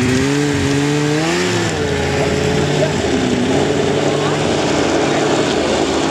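Polaris XC 700 snowmobile's two-stroke engine running as it pulls away, its pitch rising and falling slightly, with a dip about two seconds in.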